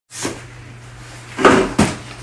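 An aluminium steamer-pot lid being set down on the pot, knocking twice about a second and a half in, over a low steady hum.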